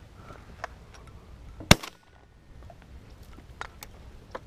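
A single shotgun shot about halfway through, sharp and by far the loudest sound, with a few faint clicks around it.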